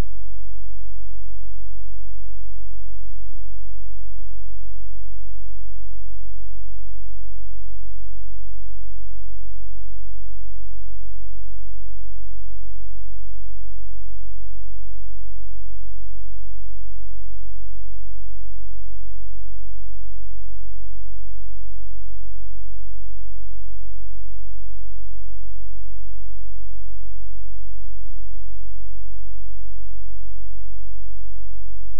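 Loud, steady, low-pitched electrical hum, with no other sound over it: mains hum picked up while capturing the VHS tape, on an otherwise silent stretch of the tape.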